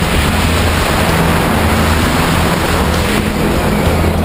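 Wind rushing over the camera microphone during a tandem parachute canopy ride, a loud, steady rush with no break.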